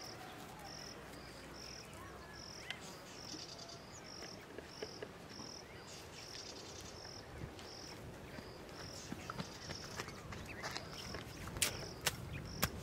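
An insect chirping steadily in short, high, evenly spaced pulses, about two a second. A few sharp knocks near the end come from wooden sticks being handled over the pit.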